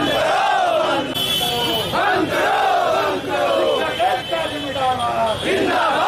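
A crowd of protesters shouting slogans together: loud, overlapping rising-and-falling shouts that go on without a break.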